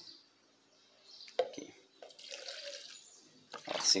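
Faint sounds of liquid being poured off-camera as butyl glycol is measured out, with a light knock of a container about a second and a half in.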